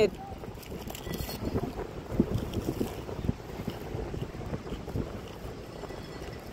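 Wind buffeting the microphone: a rough, low rumble that rises and falls with the gusts.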